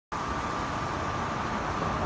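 Steady low rumble and hiss of outdoor traffic noise, with a faint steady whine held throughout.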